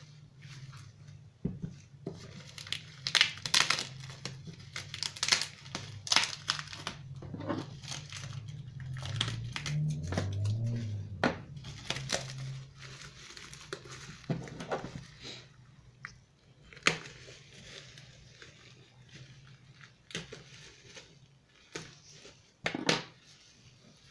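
Bubble wrap crinkling and rustling as it is handled and pulled open, with sharp tearing crackles of adhesive tape being pulled off. The crackling is dense for the first half and grows sparser, with a few isolated loud crackles later on.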